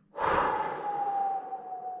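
A woman's long, heavy sigh, one breathy exhale with a faint voiced tone that sinks slowly in pitch as it fades: a sigh of exasperation after struggling to get a tight top on.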